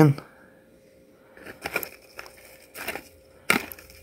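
Metal tweezers clicking and scraping against a thin plastic cup and cardboard egg-carton pieces while trying to grab insects: a few scattered light clicks, the sharpest about three and a half seconds in.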